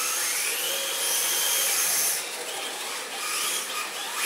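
Electric motor of a 1/10-scale RC drift car whining, rising in pitch as it speeds up, holding high, then dropping away about two seconds in, with the rise starting again near the end.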